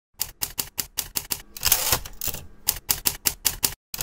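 Typewriter sound effect: a quick run of key strikes, about five a second, broken about halfway through by a longer noisy burst, then more strikes.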